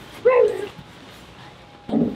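A person's short yelping vocal cry, about a quarter second in, then a brief sharp vocal sound near the end.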